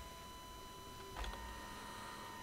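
Faint room tone with a thin steady electrical whine, and a single soft click about a second in.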